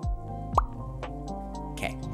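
Lo-fi background music with steady held chords. About half a second in comes a single short plop that sweeps up and back down in pitch.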